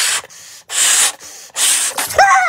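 Three strong breaths blown by mouth into a rubber balloon, each a loud rushing puff of air, with a softer hiss between them as the balloon inflates.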